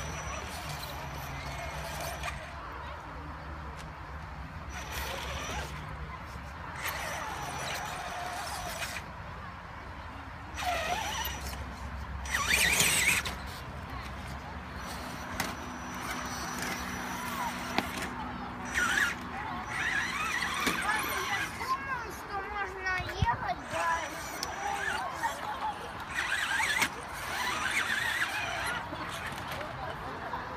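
Traxxas Summit RC crawler driven by a Tekin RX-8 Gen2 speed controller and 1900kv brushless motor, crawling slowly over rocks. A thin high electric whine comes and goes with the throttle, with a louder scrabbling burst about halfway through.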